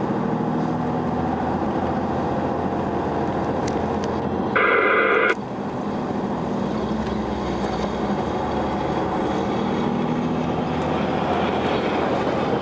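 Steady drone of a Toyota 4x4's engine and tyres on a snowy road, heard inside the cabin. About halfway through, a loud tonal burst lasting under a second.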